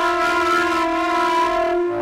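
Electronic wind controller (EVINER) played through a synth voice in duophonic mode, sounding sustained two-note double stops held under the sustain pedal; the notes change just after the start and again near the end.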